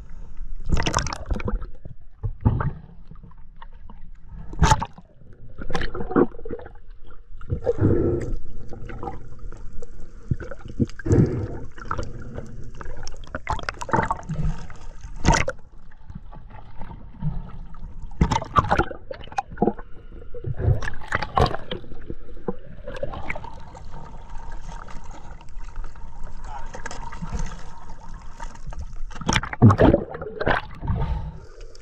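Seawater sloshing and splashing against a camera held at the surface while snorkeling, with irregular sharp splashes as it dips in and out of the water.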